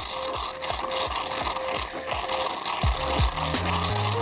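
Background music with a steady beat, the kick drum growing stronger near the end, over the steady hiss-buzz of a capsule coffee machine's milk frother pouring frothed milk into a cup.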